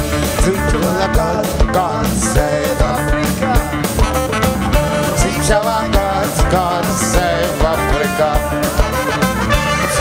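A band playing an upbeat song live, with guitar over a steady drum beat.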